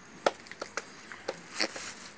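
A handful of short, sharp crinkles and clicks from a thin plastic bag and a small cardboard gift box being handled, the loudest about a quarter second in.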